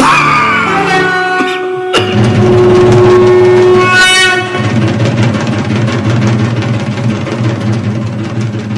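Stage music as the king takes his throne: a falling swoosh, then a long, loud horn-like note held for about two seconds, then fast drumming.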